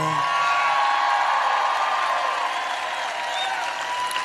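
Rally crowd cheering and applauding after an applause line, easing off slightly in the second half.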